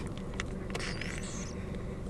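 Someone sipping an iced cold brew from a cup lid: faint small clicks and a brief squeak about a second in, over the steady low hum of a car's cabin.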